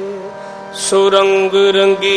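Sikh kirtan music: held notes from harmonium and voice. It dips briefly, then a new phrase starts about a second in.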